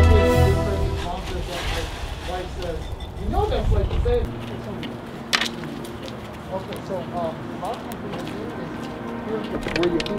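Background music fading out within the first second, then indistinct talking with a faint steady hum underneath and a single sharp click about five seconds in.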